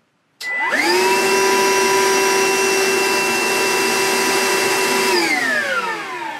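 Older single-speed Milwaukee M18 VC2 cordless wet/dry vacuum switched on: its motor whine rises quickly to a steady high-pitched run. About five seconds in it is switched off and the whine winds down, falling in pitch.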